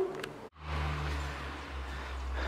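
A steady low hum with a faint hiss over it. It starts abruptly after a brief dropout about half a second in, preceded by a couple of faint clicks.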